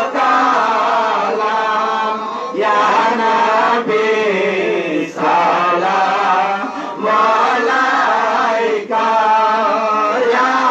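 Male voices chanting Islamic devotional verses of a milad into microphones, in sung phrases of one to two seconds broken by short pauses.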